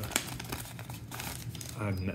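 Paper-and-foil wrapper of a Topps Heritage High Number baseball card pack crinkling as the torn pack is opened and the cards are pulled out, loudest at the start and fading to a softer rustle.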